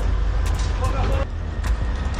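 Steady low rumble of wind and handling noise on a helmet-mounted camera's microphone as the wearer moves, with brief men's voices around the middle and a few sharp clicks.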